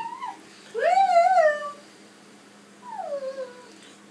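A toddler's high-pitched wordless vocalizing: a brief call at the start, a long call about a second in that rises and then holds, and a shorter call near the end that slides down in pitch.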